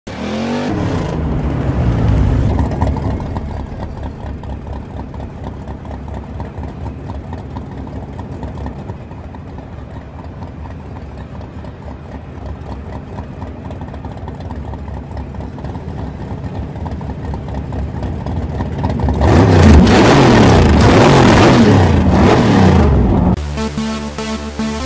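Dubbed car engine sound: revving up and down at the start, running steadily through the middle, then revving hard and loud for a few seconds near the end. Music takes over just before the end.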